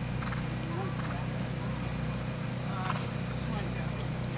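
Horse trotting on grass, its soft hoofbeats heard over a steady low outdoor hum.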